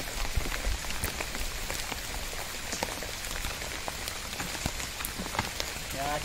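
Steady rain falling, with many separate drop hits ticking irregularly throughout.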